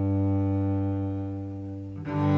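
Solo cello holding one long, low bowed note that slowly fades.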